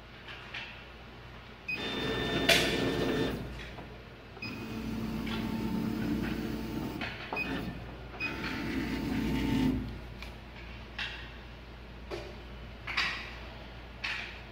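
Stepper motors of a 60 W CO2 laser cutter jogging the laser head along its gantry in three moves of one to two seconds each, a steady mechanical whine with some rattle. A few short clicks come near the end.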